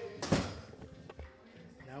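Music from the room behind is cut off by a door shutting with a single thump about a third of a second in.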